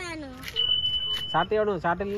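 A single steady, high-pitched electronic beep lasting about a second, with people's voices just before and after it.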